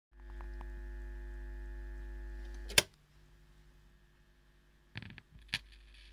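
Record player being started for a 78 rpm shellac disc: a steady electrical hum that stops with a loud sharp click a little before halfway, then a short scrape and a second, softer click near the end as the record gets going.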